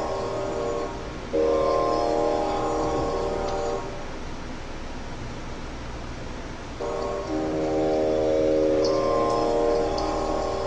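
Harmonium playing long, steady held chords in phrases of a couple of seconds each, with a pause of about three seconds in the middle.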